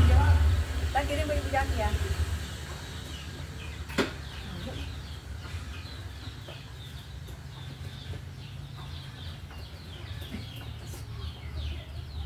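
Many short falling chirp calls from birds, repeated over a steady low rumble. A voice is heard in the first two seconds, and there is a single sharp knock about four seconds in.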